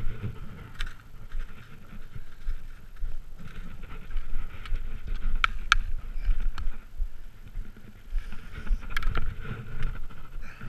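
Skate skis pushing off and gliding on groomed snow in a steady rhythm of swishing strides, with a few sharp clicks of ski-pole tips planting in the snow.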